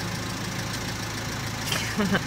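Van engine idling steadily, heard from inside the cab as a low, even hum.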